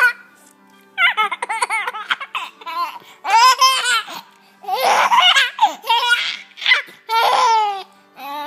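Seven-month-old baby laughing in repeated fits. A quick stuttering run of giggles comes about a second in, then several louder, fuller laughs follow with short pauses between them.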